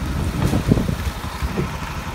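A vehicle's engine idling with a low, uneven rumble.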